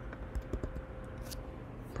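Faint, scattered keystrokes on a computer keyboard: a handful of separate key clicks.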